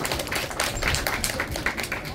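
Audience clapping: many quick, irregular hand claps.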